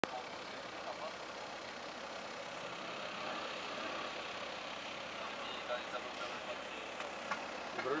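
Steady street and traffic noise with faint voices in the background. A man begins speaking Spanish at the very end.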